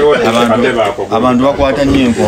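A man's voice, talking without a break, with one longer held note near the end.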